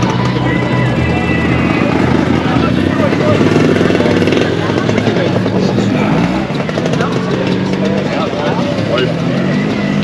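A scooter engine running steadily under the chatter of a crowd of people.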